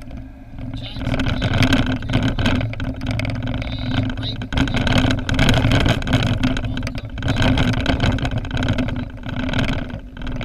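A car driving on a town street, heard from inside the cabin: a steady engine hum and tyre noise, rising about a second in, with scattered short knocks from the road.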